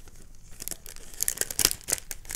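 Sheets of craft paper rustling and crinkling as they are handled and pulled out of a paper pocket, with a cluster of sharper crackles in the second half.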